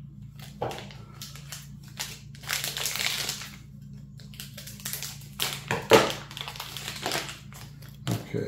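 Cardboard trading-card packaging being opened and handled: crinkling and rustling with scattered clicks. There are two busier stretches, about two and a half to three and a half seconds in and again around six seconds, with the sharpest click near six seconds.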